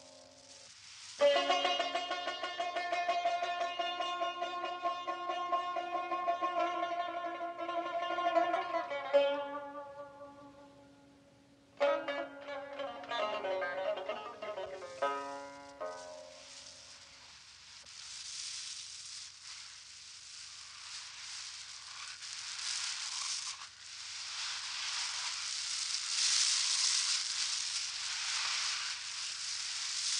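Stringed-instrument music in two phrases of sustained tones, split by a short pause. After the second phrase a hissing noise takes over and grows louder toward the end.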